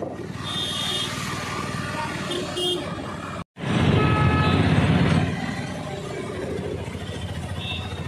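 Road noise from inside a moving open-sided auto-rickshaw: a steady low rumble, with short horn toots from traffic. About three and a half seconds in, the sound breaks off for an instant, then a loud low rumble lasts about a second and a half.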